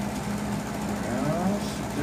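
A steady, low mechanical hum from a running motor, with a faint voice in the background.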